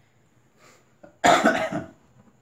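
A man coughs once, a short loud burst a little over a second in.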